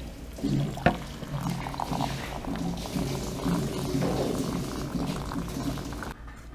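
Water pouring from a water dispenser's tap into a ceramic mug, with a run of low gurgles repeating through the pour. A sharp click sounds about a second in.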